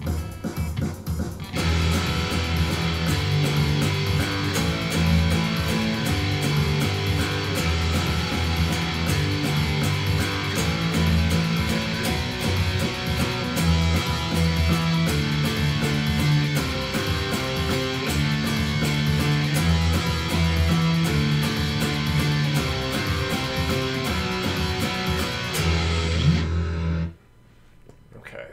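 Electric guitar playing a fast riff of power chords at full tempo, 160 beats per minute. It starts about a second and a half in and stops abruptly about a second before the end.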